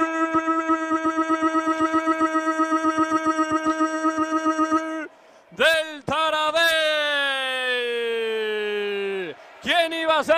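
A male commentator's drawn-out shouted goal call, marking a goal just scored. One held note with a fast waver lasts about five seconds; after a brief break come two short shouts and then a long call that slowly falls in pitch.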